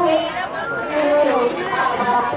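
Several people's voices overlapping in a continuous murmur of chatter.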